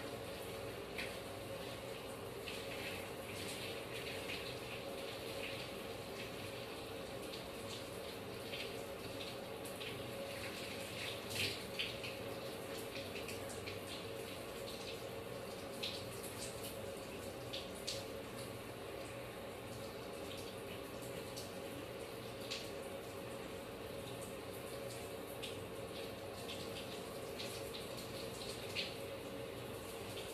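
Water running steadily from a bathtub tap, with short wet squelches and splashes as hands scrub a lathered head of hair.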